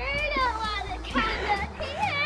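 Children's voices calling out and shrieking in long rising and falling cries during a chasing game, in bursts near the start, in the middle and at the end.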